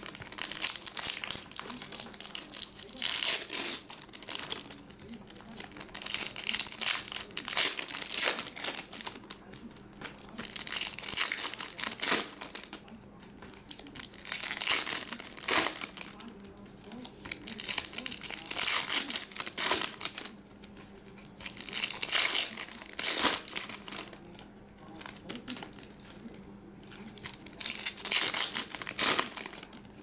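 Foil trading-card packs being torn open and their wrappers crinkled by hand, in repeated bursts of rustling every second or two, over a faint steady hum.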